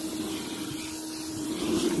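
Carpet extraction wand (Zipper Wand) on truck-mount vacuum suction, a steady rushing hiss of air and water being drawn up through the hose, with a steady hum under it.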